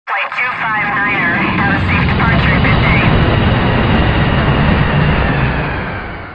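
Jet airliner taking off, its engines giving a loud steady roar that starts fading near the end. A voice is heard over the engines in the first three seconds.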